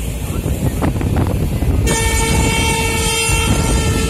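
Steady running rumble of a moving train, and from about halfway through the locomotive's horn sounding one long, steady blast.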